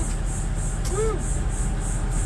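Super Class C motorhome's engine idling with a steady low hum, heard from inside the cab with the driver's door open. A faint high buzz pulses about five times a second over it.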